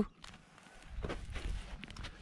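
A long held blast on a spiral horn shofar stops abruptly at the very start. It is followed by faint, irregular scuffing and soft knocks.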